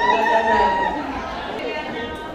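Several women's voices talking and singing over one another, one voice holding a long note at the start.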